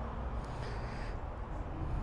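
Steady low background rumble of street and forecourt ambience, with a faint, short high-pitched call about half a second in.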